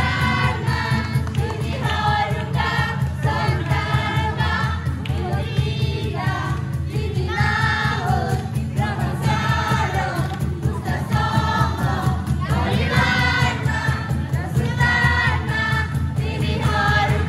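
A group of voices singing a church song together, with instrumental accompaniment and a steady beat.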